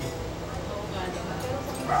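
Low chatter of several people talking around a table, with a short sharp yelp just before the end.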